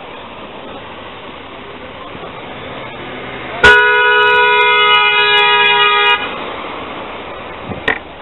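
A vehicle horn sounds once, held steadily for about two and a half seconds starting a little past the middle, over a background of street noise.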